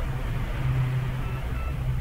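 Steady low hum with a faint hiss: the background noise under the recording, with no speech.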